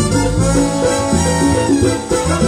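Live salsa band playing an instrumental stretch of a song, with bass notes and conga drums keeping a steady rhythm.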